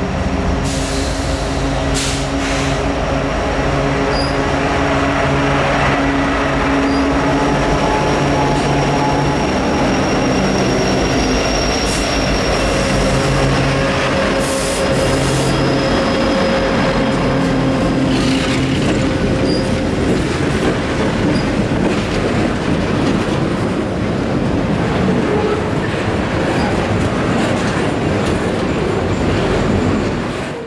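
Diesel freight locomotives passing close by with their engines running, the engine drone strongest in the first half and fading as the train cars roll past. Thin wheel squeal and scattered clicks of wheels over the rails run through the rolling noise.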